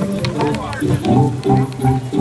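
Organ music playing over the show ring's loudspeakers, held chords going on without a break. Short gliding voice-like calls sound over it about half a second in.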